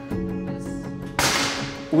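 Air cannon firing a coil-shaped test projectile: a sudden sharp blast of compressed air a little over a second in, its hiss fading over about half a second, over background music.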